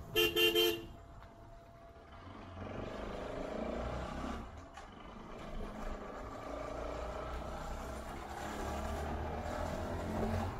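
A vehicle horn sounds a short, pulsing toot right at the start, the loudest thing heard. After it, a steady low engine rumble and road noise carry on, swelling a little twice.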